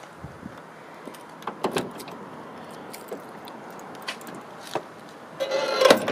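Keys jingling and clicking in the trunk lock of a 1938 Buick, with several sharp clicks of the handle and latch as the trunk lid is unlocked and lifted. A short steady tone sounds near the end as the lid comes up.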